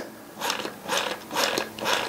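TA-1/PT field telephone's hand ringing generator lever being squeezed repeatedly, a clicking rattle of about three strokes a second, sending ringing current down the line to the switchboard.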